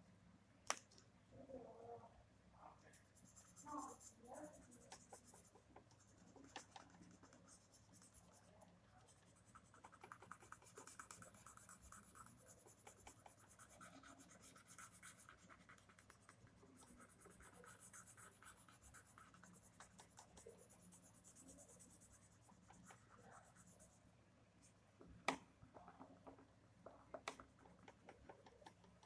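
Pencil shading on sketchbook paper: faint, fast, scratchy strokes in long runs, with two sharp ticks, one about a second in and one near the end.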